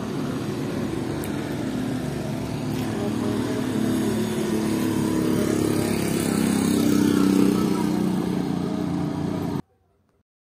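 Street traffic with a vehicle engine running: a steady low rumble that grows louder around six to seven seconds in, then cuts off suddenly near the end.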